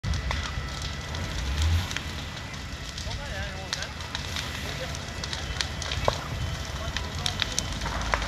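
A burning thatched roof crackling and popping with many sharp snaps, over a steady low rumble.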